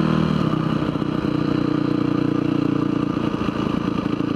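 Single-cylinder off-road motorcycle engine running at a steady cruising speed on pavement, with wind noise on the helmet-mounted microphone.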